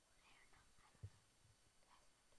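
Near silence: studio room tone with faint whispering and one soft low thump about a second in.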